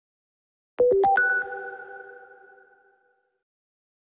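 A short electronic chime used as a news transition sting: four quick notes about a second in, dipping and then climbing higher, each ringing on and fading away over about two seconds.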